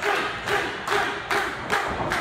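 A steady run of thuds on a wrestling ring, about two to three a second, each with a short echo.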